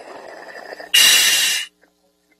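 A scuba diver breathing through a regulator, picked up by the mask's communication microphone: a softer rushing breath, then a loud hiss of air through the demand valve on the inhale that lasts under a second and cuts off sharply.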